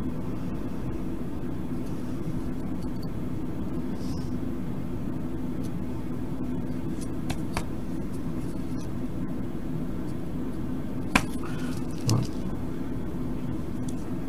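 A few light clicks and taps of the LED cube's plastic LEDs and leads being handled and pressed onto its circuit board, the sharpest click about eleven seconds in, followed by a soft knock. A steady low hum runs underneath.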